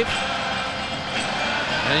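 Steady crowd din of a packed hockey arena, an even wash of noise heard through the television broadcast.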